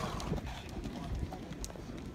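Hoofbeats of a pony cantering on a sand arena: soft, irregular thuds from the hooves striking the sand.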